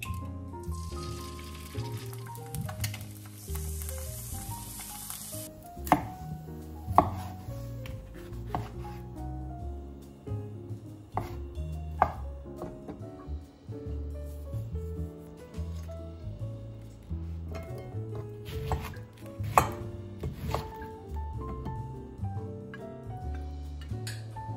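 An egg sizzling as it hits the hot frying pan for the first few seconds. Then a kitchen knife cutting on a wooden cutting board, a series of sharp separate chops, over soft background music.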